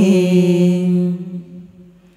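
Two women singing a Quan họ folk duet without instruments through handheld microphones. They hold one long, steady note that fades away over the second second.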